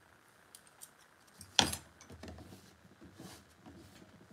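Small clicks and taps of hobby tools and plastic kit parts being handled on a workbench, with one sharp click about one and a half seconds in.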